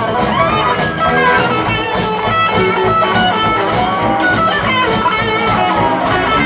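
Live rock band playing an instrumental break: electric guitar lead lines with bent notes over bass and a steady drum beat.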